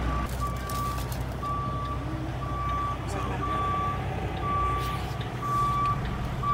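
A truck's backup alarm beeping about once a second, each beep a single steady tone about half a second long, over the low rumble of an idling diesel engine.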